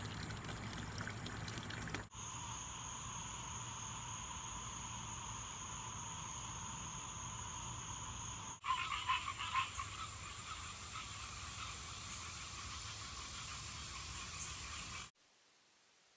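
A small garden fountain trickles into a pond for the first two seconds. Then comes an evening chorus of frogs and insects: steady high-pitched trilling with a lower continuous tone beneath. After a cut, a louder flurry of calls comes at the start of the second scene. The chorus stops abruptly about a second before the end, leaving near silence.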